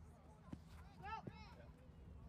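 Faint, distant shouting from the lacrosse field over a low steady outdoor rumble, with a short click about half a second in.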